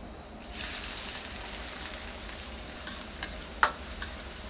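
Chopped onion hitting hot oil in a wok and sizzling, the hiss building about half a second in and holding steady as it is stirred with a metal ladle. One sharp clink of the ladle against the wok near the end.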